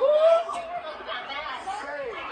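Indistinct voices talking; only speech, no other sound stands out.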